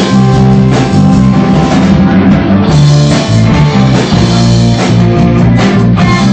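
Live rock band playing loud: electric guitars over bass and drum kit in a steady beat, with no vocals.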